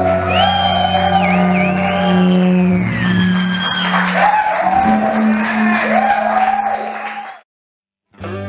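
Live rock band playing: electric guitar over bass and drums, with a high lead line sliding up and down in pitch. The music cuts off suddenly near the end.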